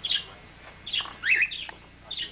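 Caged pet parakeets chirping: a sharp chirp right at the start, then a quick cluster of chirps and twitters about a second in.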